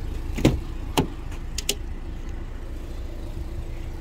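Door of a 2015 Cadillac ATS Coupe being opened: two sharp clicks from the handle and latch about half a second and one second in, then a couple of fainter clicks, over a steady low hum.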